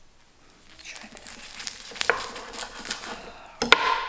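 A knife cutting through a nori-wrapped sushi roll on a wooden chopping board: a run of small crackles as the seaweed wrapper gives, then one sharp knock near the end as the knife is set down on the board.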